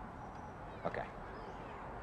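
A single short spoken "okay" about a second in, over a steady low background hiss.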